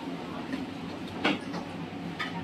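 A motor running steadily with a low hum, and one sharp clack just past halfway.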